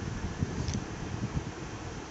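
Steady background noise with an uneven low rumble, and one faint short click about two-thirds of a second in.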